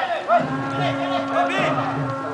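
A cow mooing: one long, low call that starts about a third of a second in and drops in pitch near the end, with voices in the background.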